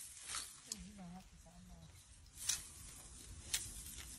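Nylon cast-net mesh being gathered and looped over the arm, giving a few short, sharp rustling swishes, with a faint murmur of a man's voice about a second in.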